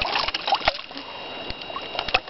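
Creek water splashing and sloshing around wader-clad legs and a stick being worked in the water, with several small separate splashes.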